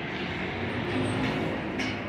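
City street traffic: a steady rumble of passing vehicles that swells to its loudest about a second in and then eases off.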